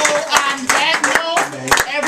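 A small group clapping by hand, sharp separate claps, while excited voices call out over them.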